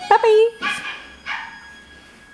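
Dogs barking and yelping on a film soundtrack playing through a television: a loud yelp that falls in pitch, then two shorter barks about half a second apart.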